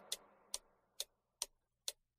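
A steady ticking: five sharp ticks, evenly spaced a little under half a second apart, in an otherwise quiet pause.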